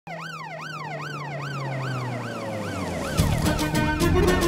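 Police car siren wailing up and down in quick sweeps, about two a second, that slow and fade as the car comes to a stop. A music track with a strong beat comes in about three seconds in.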